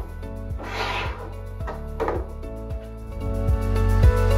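Background music, with the rubbing and scraping of hard plastic mealworm trays being stacked onto one another about a second in and again about two seconds in. The music swells near the end.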